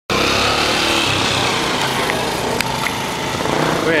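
A motor engine running close by, loud and steady, with a few faint clicks.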